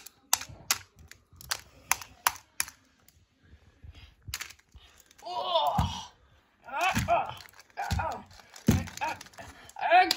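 A quick run of sharp plastic clicks and knocks as toy action figures are handled and clashed together, then from about five seconds in a child's voice making wordless play-fight sounds in several short bursts.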